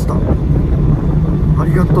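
Fishing boat's engine running, a loud, steady low drone.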